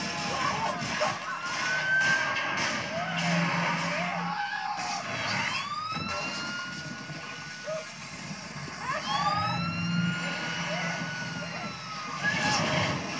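A police siren wailing, heard through a TV speaker: three times it rises in pitch and then holds steady for a few seconds, over other film sound.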